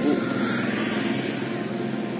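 A vehicle engine's steady hum that slowly fades away.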